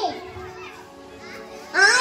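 A girl's voice through a microphone trails off just after the start. In the pause, faint chatter of a crowd of children carries in the background, and her speech resumes near the end.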